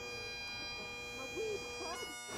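Bagpipes playing, holding one steady note.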